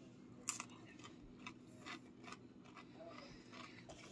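Faint chewing of a crunchy breaded fish stick: a few soft crunches, the sharpest about half a second in, over quiet room tone.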